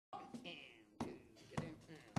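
Faint voice on a concert stage with two sharp knocks, about a second in and again half a second later, in the hush just before a jazz band starts to play.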